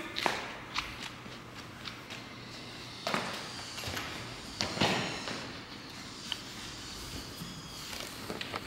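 Footsteps and scuffs on a concrete shop floor, a few irregular light knocks and shuffles, over a faint steady hum.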